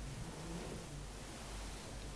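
Quiet room tone: a steady low hum under faint hiss, with no distinct event.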